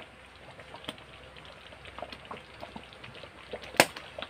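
Thick tomato sauce bubbling in a metal pan, with scattered small pops, and one sharp click near the end.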